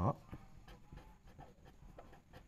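Red felt-tip marker writing by hand on paper: a run of faint short scratches and taps as the pen strokes out a word.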